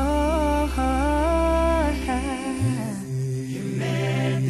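A male a cappella gospel vocal group singing without instruments: a melodic voice line over a held bass note, which moves to a new note about two and a half seconds in.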